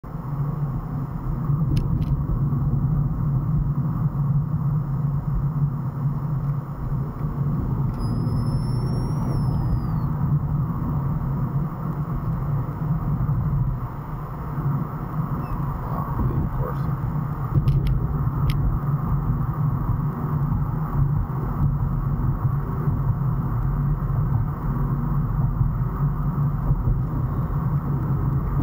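Steady low rumble of road and engine noise inside a car's cabin, driving at about 30–35 mph. A few faint clicks come through, twice near the start and twice a little past the middle.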